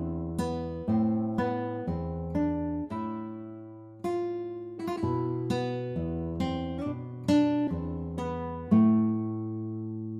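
Background music: a slow melody of plucked acoustic-guitar notes, each note ringing and then fading.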